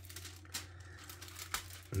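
Thin plastic film lid being peeled off a microwaved ready-meal tray, crinkling and crackling in a quick, irregular series of small clicks.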